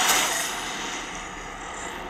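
Action sound effects from a film trailer's soundtrack playing over speakers: a loud hit right at the start, then a rumbling noise that slowly fades.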